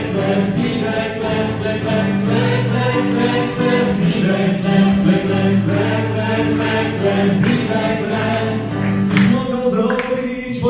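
Several male and female voices singing a song together in long held notes, accompanied by an acoustic guitar.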